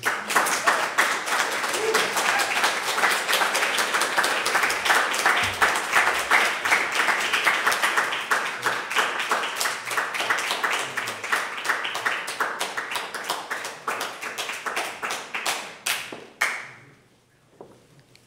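Audience applauding, a dense steady clapping that thins to a few separate claps and stops a second or two before the end.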